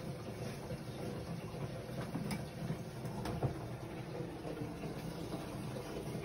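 Toilet cistern refilling, a steady rush of water in a small room, with a few light clicks about two and three seconds in as toilet paper is handled at the holder.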